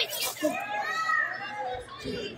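Children in the ringside crowd shouting and calling out in high voices, with one drawn-out call near the middle.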